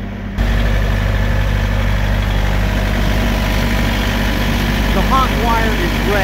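Small diesel engine of a trailer refrigeration (reefer) unit running steadily at idle, heard up close with the unit's compartment open. The engine sound gets suddenly louder about half a second in, then holds an even, low hum.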